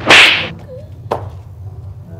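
A sharp smack on a full-face motorcycle helmet from a hand-held object, followed by a fainter click about a second later.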